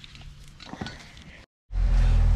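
Faint background with one brief soft sound, then a short dropout to silence and a loud, steady low hum that starts near the end.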